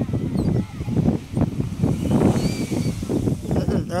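Wind buffeting the phone's microphone: a low, uneven rumble.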